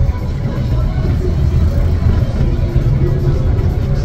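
Low, steady engine and road rumble inside a moving coach, with music and indistinct voices faintly over it.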